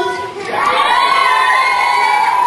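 A group of children shouting and cheering together, rising into one long, high, held shout about half a second in.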